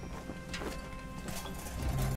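Soundtrack music with low held notes, with a few scattered knocks over it.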